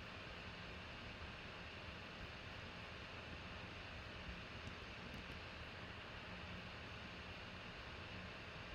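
Quiet room tone: a steady hiss with a faint low hum, and a couple of faint ticks about five seconds in.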